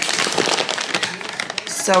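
Crinkling and rustling of a plastic-laminated dog food bag as it is handled, a rapid run of crisp crackles, before a short spoken word near the end.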